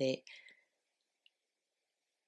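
The last word of a woman's voiceover at the very start. Then near silence, broken only by one faint small click a little over a second in.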